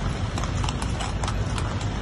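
Horses' shod hooves clip-clopping on a paved street as they pull horse-drawn carriages: an uneven run of sharp clacks, a few a second, over a steady low rumble.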